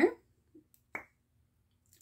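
A single short, sharp click about a second in, amid near quiet.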